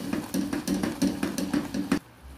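A spatula stirring thick, bubbling passion fruit jam in a metal saucepan, scraping and knocking against the pot in quick strokes, about five a second. The strokes stop abruptly at the end.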